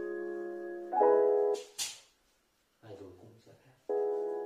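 Piano chords from a song's intro, held and changing to a new chord about a second in, then stopping. A short hiss and a faint low voice fill a brief gap before the piano chords come back near the end.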